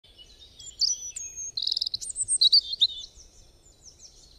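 Songbirds chirping: quick high chirps, trills and whistled glides that fade out near the end.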